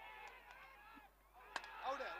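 Faint, distant shouting of cricket players on the field, with a sharp knock about one and a half seconds in, followed by louder shouts near the end as fielders appeal.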